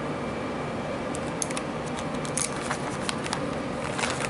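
A few small, sharp clicks and scrapes of a metal quarter-inch audio plug being worked into a cable adapter by hand, over steady background noise.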